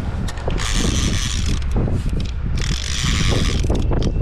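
Conventional fishing reel under the load of a hooked kingfish, giving two ratcheting buzzes of just over a second each with a short gap between them, over a low wind rumble.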